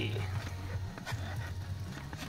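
Small electric trolling motor running out of the water with a steady low hum, and a few light clicks as its tiller is turned.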